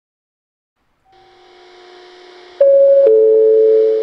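Two-note descending chime from a station public-address speaker, slightly echoing: a higher tone about two and a half seconds in, then a lower tone half a second later that rings on and begins to fade, the chime that opens a next-train announcement. Faint steady tones come before it.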